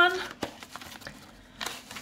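Yellow padded mailer envelope being handled and opened, rustling, with a sharp click about half a second in and a few light rustles near the end.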